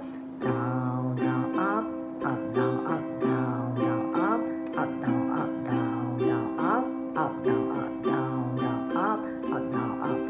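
Ukulele strummed in a steady repeating rhythm of chords, played as the six-strum down, down, up, up, down, up pattern for each chord.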